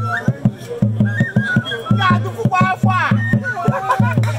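Igbo masquerade dance music: drums beating a quick, steady rhythm, with a higher melodic line and voices over it.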